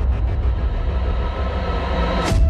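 Cinematic logo-intro sound design: a deep, steady rumble with a hissy wash above it, between two swooping hits.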